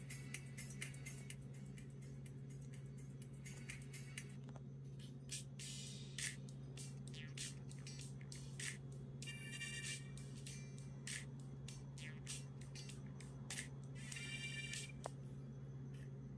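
Faint, tinny music with a beat leaking from a pair of ATVIO SBT-107 true-wireless earbuds held up close to the microphone, over a steady low hum.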